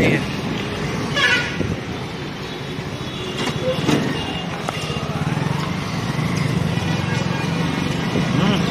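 Busy street traffic: small motorbike and scooter engines running close by, with vehicle horns tooting and people's voices in the background.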